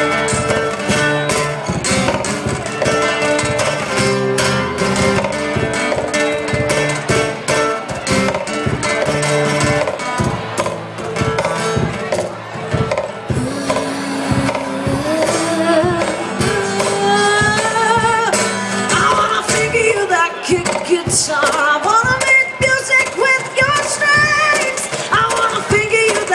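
Acoustic guitar strummed in steady chords, played live through a PA. About halfway in a wordless sung vocal line comes in over the strumming, gliding up and down in pitch.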